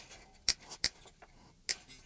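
Side cutters snipping through the old steel strings of a Squier Telecaster Deluxe near the 12th fret, giving three sharp snips less than a second apart. The old strings are being cut off so they can be replaced.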